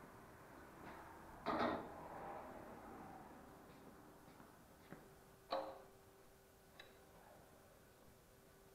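A few scattered knocks and clunks of metal equipment being handled on a concrete floor, the loudest about one and a half seconds in with a short ring after it, then three smaller ones. A faint steady hum runs underneath.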